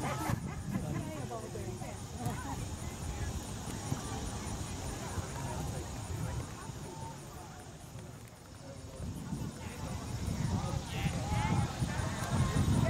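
Distant voices of players and spectators calling out at a youth soccer game, over a low, uneven rumble, growing louder near the end.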